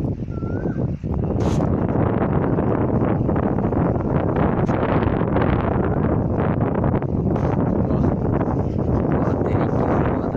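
Wind buffeting the phone's microphone in an open field: a loud, steady rush of noise that flickers constantly with the gusts.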